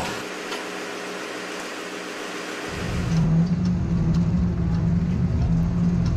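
Fishing tug's engine running steadily with water noise alongside the hull. About two and a half seconds in, the sound switches abruptly to a louder, deeper, steady engine drone.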